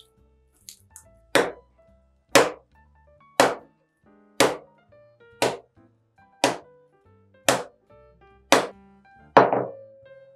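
Cocoa bread dough slammed down onto a wooden work table about once a second, nine times, the last one the loudest: slap-and-fold hand kneading.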